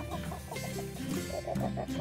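A hen clucking in a quick run of short notes while she eats, over background music with steady low sustained tones.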